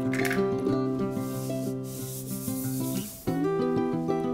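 Granulated sugar poured into a glass mixing bowl, a grainy hiss lasting about two seconds, over background music.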